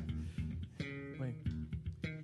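A few notes plucked on an amplified electric guitar through the stage PA, each ringing on, with new notes starting just under and just over a second in: a guitar that had lost its sound now apparently reconnected and being tried.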